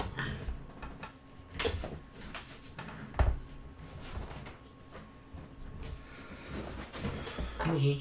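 A few soft knocks and bumps, the loudest a dull thump about three seconds in, over faint room tone with a steady electrical hum.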